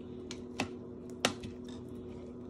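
A metal spoon knocking against the side of a pot as a thick cream sauce is stirred: three or four sharp clicks, the loudest about a second and a quarter in, over a steady low hum.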